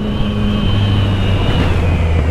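Yamaha MT-09's three-cylinder engine running loudly under way, its note dropping lower near the end as the revs fall.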